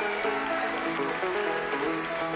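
Live instrumental band music with a banjo playing picked notes.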